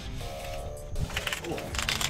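Background music, with a man's short exclamation "oh" and a burst of splashing in the second half as a hooked fish is pulled out of the water.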